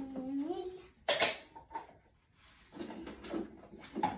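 Children's voices with a sharp wooden knock about a second in, then a few lighter knocks: wooden boxes of counting material being handled and pulled from a shelf.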